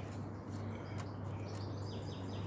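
Faint rubbing of a microfiber cloth wiping a plastic monitor case over a steady low hum, with one light click about a second in. Faint bird chirps come near the end.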